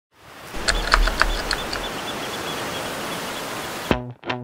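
Steady rush of surf breaking on rocks, with a few sharp splashes in the first two seconds. It cuts off just before the end as music begins.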